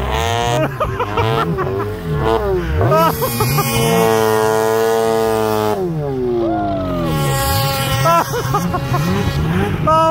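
Snowmobile engine revving up and down hard in deep snow. It is held at high revs for about two seconds midway, then winds down as the sled bogs down and gets stuck.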